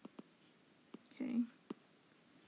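A few light clicks of a stylus tapping on a tablet screen during handwriting, with a brief soft whispered vocal sound a little after one second in.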